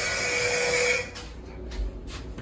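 Schindler 321 elevator at the landing: about a second of steady whine over a hiss, starting and cutting off abruptly.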